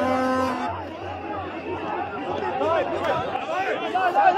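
Crowd of protesters and police in a scuffle, many overlapping voices shouting at once. A single held note rings for about half a second at the start.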